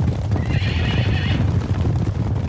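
A body of cavalry horses galloping, a dense drumming of many hooves, with one horse whinnying for about a second, starting about half a second in.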